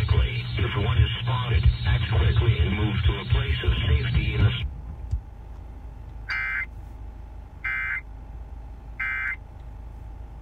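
Car radio audio with music, cut off abruptly about halfway through. Then three identical short electronic data bursts, about a second and a half apart: the Emergency Alert System end-of-message tones that close a broadcast severe thunderstorm warning.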